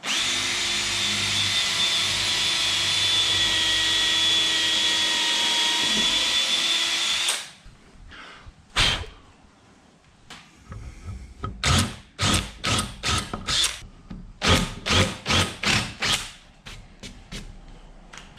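Cordless drill boring a pilot hole into a hardwood board. It runs steadily with a high whine for about seven seconds and stops suddenly. A few seconds later comes a quick string of about a dozen short, sharp sounds.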